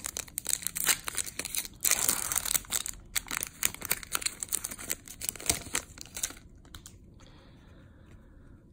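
A foil Yu-Gi-Oh booster pack torn open by hand, its wrapper tearing and crinkling in a dense run of crackles. The sound dies away about six seconds in as the cards come out.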